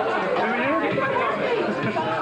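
Several people talking at once, an indistinct jumble of overlapping voices.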